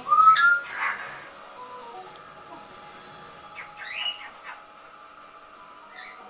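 Newborn puppies squealing and whining while nursing: a loud rising squeal right at the start, another just after, and a quicker cluster of squeaks about four seconds in.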